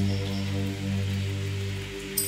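Background music: a sustained low electronic drone, several steady tones held together, over a faint hiss.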